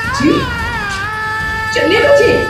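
Dramatic background music with a high, wavering note that settles into one long held tone. Short bursts of a voice, like sobbing, come underneath about a quarter second in and again near the end.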